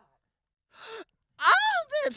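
A person's breathy gasp about a second in, followed by a loud drawn-out voiced exclamation that bends in pitch.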